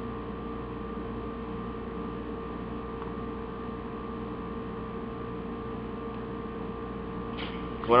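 Steady electrical hum with a few constant tones and no other events; a voice starts again right at the end.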